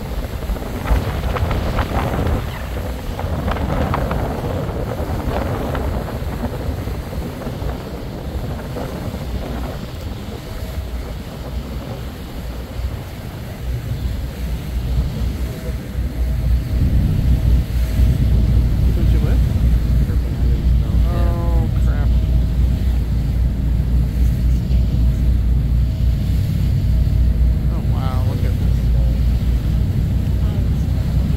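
Steady low rumble of a tour boat under way, with wind buffeting the microphone and water rushing past the hull; it grows louder about halfway through.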